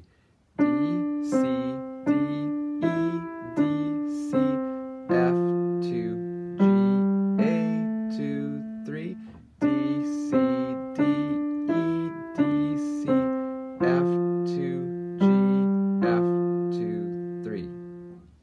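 Steinway & Sons piano playing a slow, simple beginner melody in the middle register, one note about every three-quarters of a second, starting about half a second in and ending on a fading note. A man's voice speaks the note names along with the playing.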